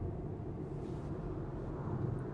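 Steady low road and tyre rumble heard inside the cabin of a Tesla Model 3 Performance travelling at about 45 mph.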